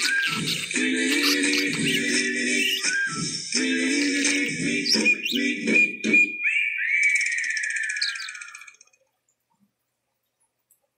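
Budgerigar chattering and warbling in quick chirps over music; the music stops about six seconds in and the bird finishes with a falling whistle before the sound cuts off near nine seconds.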